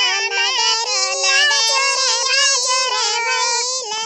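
High-pitched cartoon character's voice singing a song, holding long notes that step and slide between pitches.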